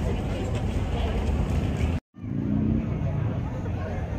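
Outdoor street-festival ambience: people talking in the background over a steady low rumble. The sound drops out completely for a moment about halfway through, then comes back.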